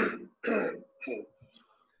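A man clearing his throat and coughing: short rough bursts in the first second or so.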